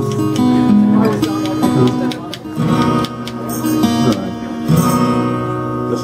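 Acoustic guitars strummed and picked, chords ringing out, with short breaks in the playing a little after two and three seconds in.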